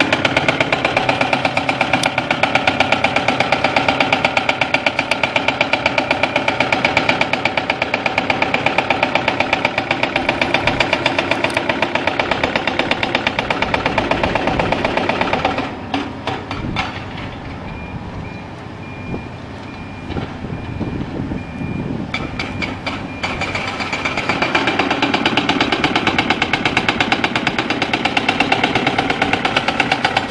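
Heavy construction machinery running, its diesel engine noise carrying a fast, even pulsing. The sound drops for several seconds in the middle, when a reversing alarm beeps faintly.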